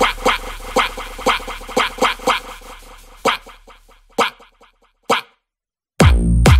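Breakdown of an electronic dance remix: short, punchy sampled hits repeating about twice a second over a low bass, growing sparser and quieter as the bass fades out, then a moment of complete silence near the end just before the drop.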